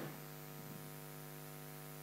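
Faint, steady electrical mains hum from the room's microphone and sound system, a low buzz of several even tones.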